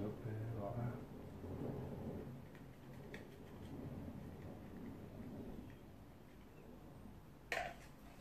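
A man's voice muttering faintly at the start, then quiet room sound, with one short sharp click-like sound near the end.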